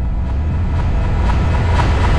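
An electronic build-up: a swelling whoosh of noise over a deep bass rumble, rising in brightness towards the end as it leads into dance music.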